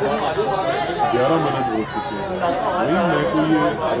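Speech: voices talking, several at once.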